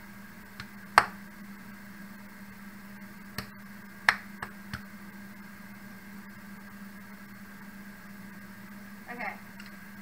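Plastic squeeze bottle of ranch dressing being squeezed over a salad bowl, giving a handful of sharp clicks and pops, the loudest about a second in and a few more around four to five seconds, over a steady low hum.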